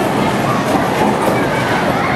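Bowling alley din: a steady rumble of balls rolling down the lanes and pinsetter machinery clattering as it clears and resets pins, with voices in the background.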